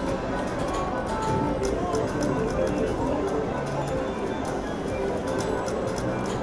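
Casino slot floor: a Siberian Storm video slot machine spinning its reels, with short electronic tones and clicks over a steady murmur of other machines' jingles and distant crowd voices.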